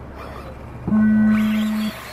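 Race start tone from the timing system: one steady electronic beep about a second long, starting about a second in and cutting off sharply, the signal that starts the race.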